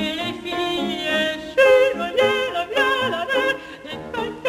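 A mezzo-soprano singing a classical art song in French with piano accompaniment, the voice moving through short notes with a marked vibrato on the held ones.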